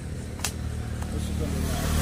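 A road vehicle passing, its engine growing louder toward the end, with one sharp click about half a second in.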